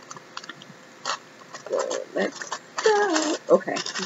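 A woman's voice making short wordless sounds and mumbles while she opens a beauty subscription box, with a few faint clicks of handled packaging in the first second.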